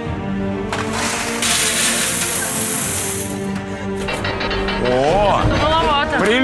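Coins poured from a pot into a large metal bowl, a dense rush of clinking lasting about three seconds, under background music with sustained chords; voices come in near the end.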